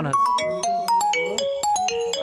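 A mobile phone ringtone: a quick melody of short, clear electronic notes stepping up and down.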